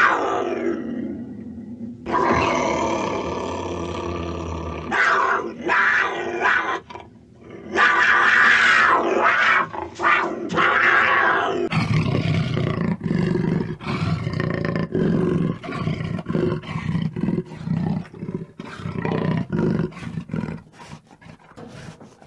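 Cougar calling: a cry falling in pitch, then long drawn-out calls in several bursts. About halfway through it gives way to a jaguar's sawing call, a run of rough grunts about one and a half a second.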